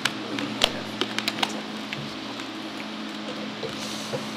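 A handful of sharp clicks and taps, bunched in the first second and a half and sparser after, over a steady low electrical hum and room noise.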